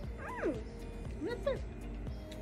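Background music with two short gliding voice-like calls over it: the first falls in pitch, the second rises and falls about a second later.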